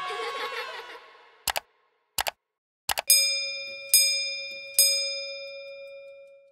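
The tail of a sung jingle fades out, then three quick double clicks, then a small bell chimes three times, each strike ringing and dying away. These are the click and bell sound effects of a subscribe-button and notification-bell animation.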